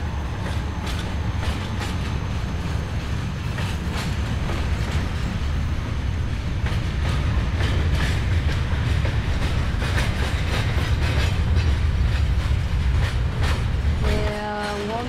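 Passenger train running on rails: a heavy low rumble with repeated clacks of the wheels over the rail joints, growing a little louder toward the end.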